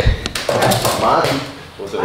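A sharp thump right at the start, then a person's voice talking.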